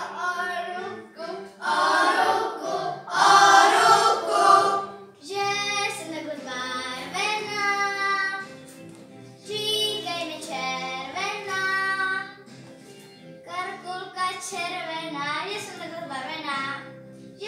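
A group of children singing a song together in sung phrases of a few seconds with short breaks, over a quiet musical accompaniment; the loudest phrase comes about three seconds in.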